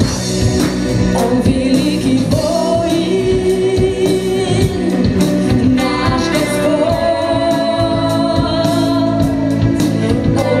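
Worship song played by a band with a drum kit, and singing voices holding long, steady notes that step from pitch to pitch.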